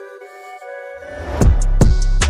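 Background music: a soft sustained melody, then a rising swell into a louder section with a beat and heavy bass about halfway through.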